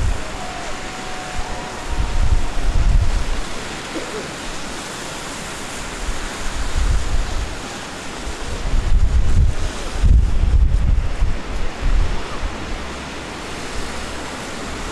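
Storm wind buffeting the microphone in irregular low gusts, strongest about two to three seconds in and again around nine to eleven seconds in, over a steady rush of wind noise.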